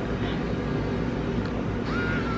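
A steady low hum, then near the end a Dremel 7900 cordless pet nail grinder switches on and runs with a steady high whine as its speeds are being shown.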